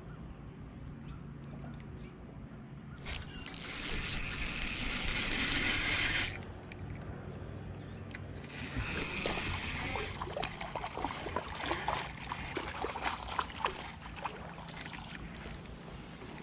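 Fishing reel being cranked with rapid small clicks while a crappie is reeled in over the second half. Before that, about three seconds in, comes a burst of rushing noise lasting some three seconds. A low steady hum runs underneath.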